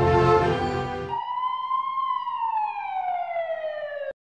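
Background music for about the first second, then an ambulance siren sound effect: a single wail that rises briefly and then falls slowly, cut off abruptly at the end.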